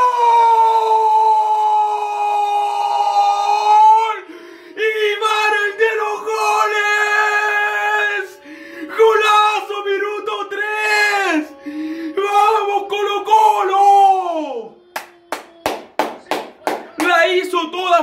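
A young man's goal scream, one long held shout of about four seconds, followed by more yelling and cheering with rising and falling pitch. Near the end comes a quick run of about ten claps, then shouting again.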